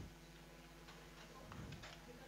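Near silence with a few faint, scattered clicks from the keys of a handheld electronic calculator being pressed.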